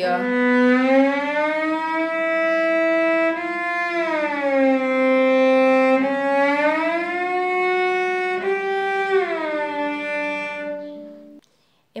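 A bowed cello note, B on the A string, sliding slowly and evenly up to E and back down in an audible glissando, twice over. It is a practice of the shift from first to fourth position, with the finger keeping its weight on the string so the whole path between the notes is heard.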